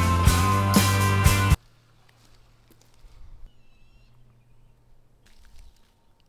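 Background music with a steady beat that cuts off suddenly about a second and a half in, leaving a quiet outdoor background with a faint high chirp partway through.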